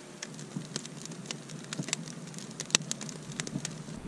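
Small cherry-wood and dry-kindling fire crackling, with irregular sharp pops and snaps over a faint hiss.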